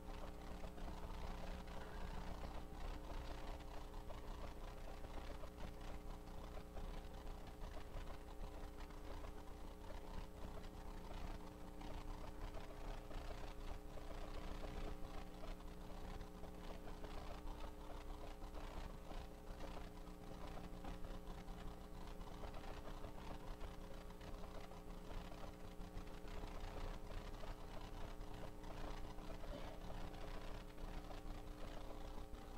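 Quiet room tone in a church sanctuary: a steady hum of several held tones that never changes, under faint scattered rustling and small clicks.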